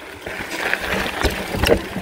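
Mountain bike rolling down a dirt singletrack: tyre and trail rumble with the bike rattling, growing louder as it picks up speed, and a few sharp knocks past the middle as it rides over bumps.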